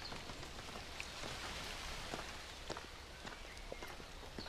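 Quiet outdoor ambience: a steady hiss with scattered soft clicks and knocks, like footsteps and movement on the ground.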